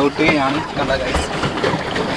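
A man talking in Malayalam in short phrases over a steady background noise.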